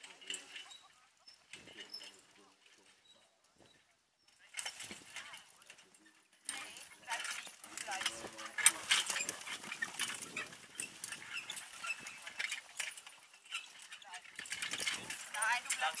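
A single pony trotting with a four-wheeled marathon carriage: hoofbeats and the clatter of the carriage, louder and denser from about six seconds in as the turnout comes close. Voices are heard in the background.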